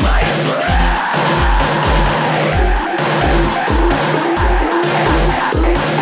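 Instrumental passage of a dark electro-industrial (EBM) track: a heavy kick drum beats steadily about twice a second under distorted synths, with a noisy synth sweep rising and falling in the first second.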